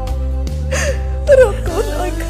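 A woman crying over soft background music with held notes: a breathy gasp, then a louder sob just after the middle.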